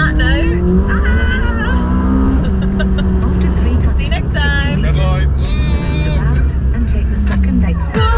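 McLaren 570S Spider's twin-turbocharged V8 heard from inside the cabin over a steady low rumble. The engine note rises in pitch early on, holds steady, then drops near the end. Two people laugh over it.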